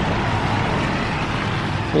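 A road vehicle passing close by on a wet street: a steady hiss with a low engine hum that swells in the middle.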